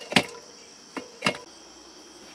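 A few short, sharp clicks over a faint steady hiss in a quiet car cabin: one just after the start, and two close together around the middle.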